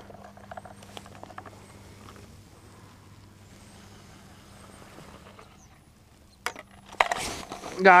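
Faint, quick clicking as a round ice-fishing tip-up is handled and lifted out of its hole, with a low steady hum underneath. A throat clear comes near the end.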